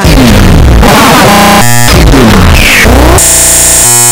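Very loud, distorted clash of electronic music and noise: pitch sweeps falling twice, a short stuttering repeat in the middle, and a steady buzzing tone held near the end.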